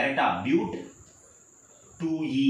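A man's voice for the first part of a second, then a quiet pause with a faint, steady high-pitched tone running on beneath.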